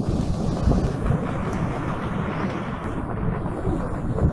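Wind buffeting the microphone: an uneven low rumble that rises and falls without a break.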